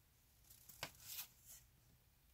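Faint rustle and crinkle of a folded paper instruction sheet being handled and shifted, with one sharp crackle a little under a second in and a few softer rustles around it.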